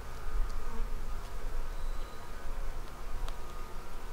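Honeybees buzzing steadily over the open top bars of a hive, a dense, many-toned hum from the colony, with a single sharp click a little past three seconds in.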